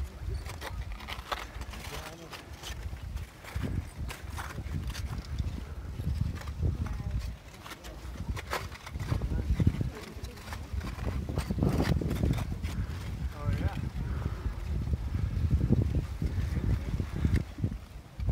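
Wind rumbling on the microphone, with irregular crunching and clinking of loose blocks of fresh lava rock and faint voices.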